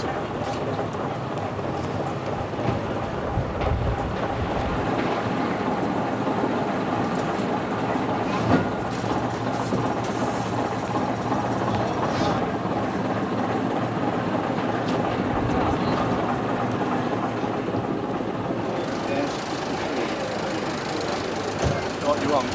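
Diesel engine of a vintage half-cab double-decker bus running as the bus pulls slowly past at close range, with people talking nearby.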